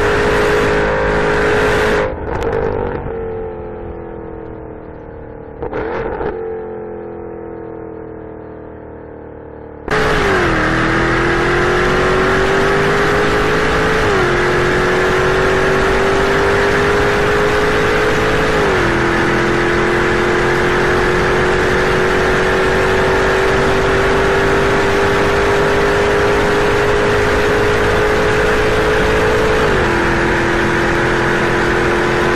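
Jaguar F-Type's supercharged V8 heard from inside the cabin at high speed. About two seconds in the throttle is lifted and the engine note falls away, with a short rise near six seconds. About ten seconds in the sound cuts back to full-throttle acceleration, the note climbing slowly and stepping down as the automatic gearbox upshifts twice, then once more near the end.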